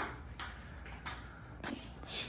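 A table tennis ball clicking off paddles and the table: four sharp knocks roughly half a second apart.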